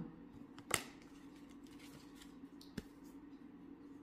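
Faint handling of tarot cards as one is drawn from a fanned spread: a sharp card click a little under a second in and a fainter one near three seconds, over a low steady hum.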